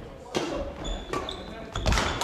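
Badminton rally on a wooden gym floor: a few sharp cracks of rackets striking the shuttlecock, with short high shoe squeaks and footfalls thudding on the floor.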